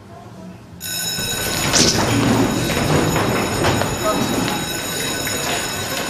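An electric school bell ringing steadily over the chatter of a crowd of pupils; both start suddenly about a second in.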